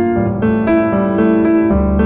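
Background piano music: a melody of single notes moving every half second or so over held lower notes, with the bass dropping to a new note near the end.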